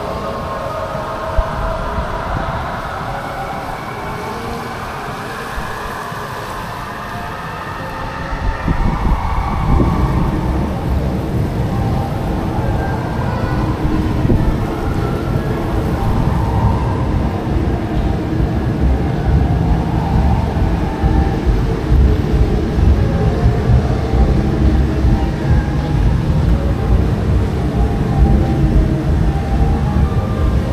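Walking ambience picked up by an action camera's microphone: a steady background murmur, then from about eight seconds in a strong, uneven low rumble from wind or handling on the microphone as it is carried.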